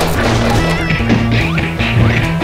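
Fast background music for a cartoon, with a repeating bass line and a steady beat.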